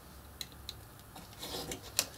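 Pencil marking a line along a clear plastic ruler on chipboard: faint scratching with a few light ticks, and a sharper click near the end as the ruler is shifted on the cutting mat.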